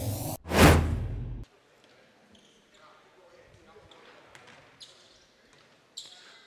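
A loud swoosh transition effect closes an intro bumper and cuts off abruptly about a second and a half in. Faint gymnasium ambience follows, with distant voices and an occasional basketball bounce.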